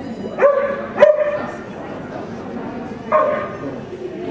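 A border collie barking three times in sharp, high barks, two close together about half a second apart and a third about two seconds later, as it runs an agility course.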